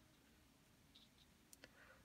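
Near silence: room tone, with a few faint clicks about a second and a half in.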